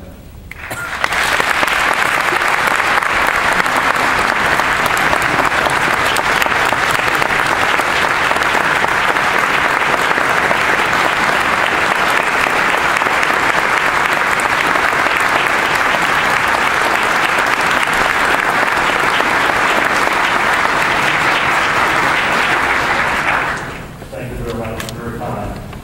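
A large audience giving a standing ovation: steady, dense applause that builds up about a second in and dies away near the end.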